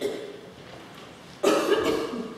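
A person coughing: a cough right at the start and a louder cough of about half a second about a second and a half in.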